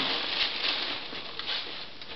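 Newsprint rustling and crinkling as dishes wrapped in it are set into a cardboard box.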